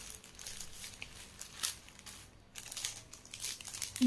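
Thin clear plastic packets crinkling in faint, irregular rustles as they are handled and picked up.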